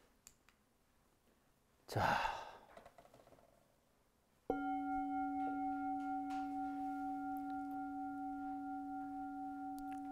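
Brass singing bowl struck once, about four and a half seconds in, then ringing on steadily with a slow wavering pulse as it gently fades.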